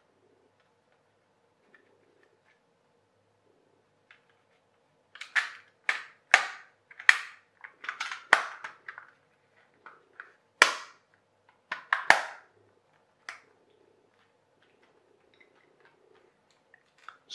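Hard plastic toy boat parts clicking and snapping as the plastic tube is pressed back onto the hull: about a dozen sharp snaps, starting about five seconds in and spread over some eight seconds.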